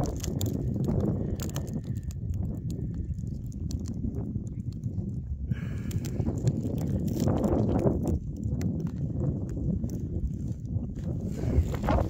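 Outdoor wind rumbling on a handheld phone microphone, with scattered crunching clicks and handling noise as the camera moves over rough lava.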